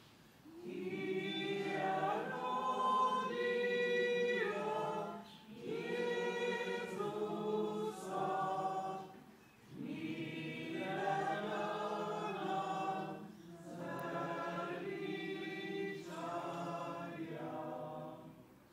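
Choir singing a hymn in several phrases with short pauses between them; the singing stops at the very end.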